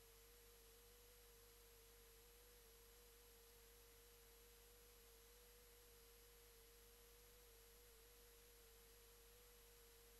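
Near silence with one faint, steady tone just under 500 Hz that wavers slightly in pitch.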